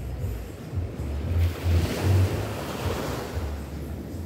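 Small waves on a sandy beach: one wave breaks and washes up the sand with a hiss that swells about a second and a half in and fades a couple of seconds later. Gusts of wind on the microphone rumble low underneath.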